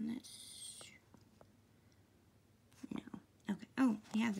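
A woman's voice, quiet and half-whispered: a short soft hiss shortly after the start, then a few murmured words near the end.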